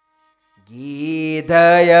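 After a brief silence, a man's voice comes in chanting a devotional Hindi verse, gliding up in pitch as it begins about half a second in and growing much louder about a second and a half in.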